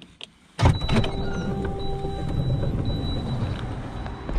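A car door is unlatched and opened: a sharp click about half a second in, then a loud steady rumbling noise that lasts to the end.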